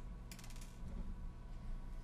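A quick run of small clicks about a third of a second in, from fingers handling tiny metal washers and the mandrel of a diamond cutting disc, over a faint steady hum.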